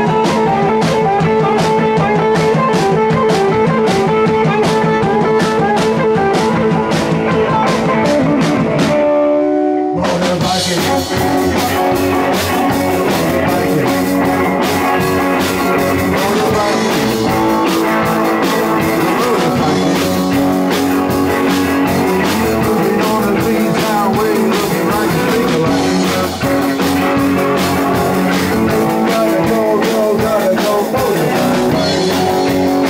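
Live rock band with electric guitars and a drum kit playing over a steady drum beat. About nine seconds in the drums drop out for a moment, leaving a few held guitar notes, then the full band comes back in.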